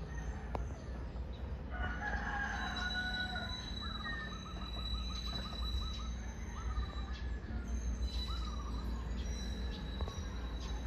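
Birds calling: a drawn-out call about two seconds in, followed by runs of short repeated notes, over a steady low rumble and a thin, steady high whine.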